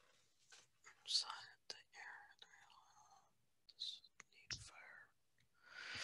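Faint whispered speech in short breathy snatches, with one soft thump about four and a half seconds in.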